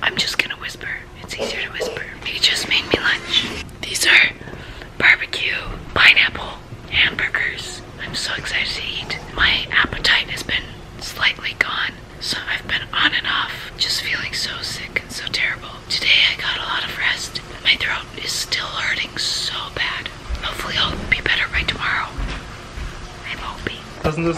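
A woman speaking in a whisper: she has lost her voice to a heavy cold and congestion.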